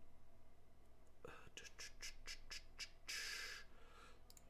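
A run of light computer mouse clicks, about four a second, followed near the end by a short breathy hiss.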